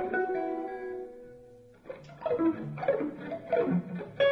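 Free-improvised jazz led by a hollow-body electric guitar: a chord rings out at the start and fades away over about two seconds, then short, scattered plucked notes follow.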